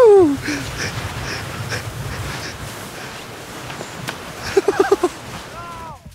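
Human voices: a loud yell that rises and falls in pitch at the start, then laughter, with four quick "ha"s about four and a half seconds in and a falling call near the end.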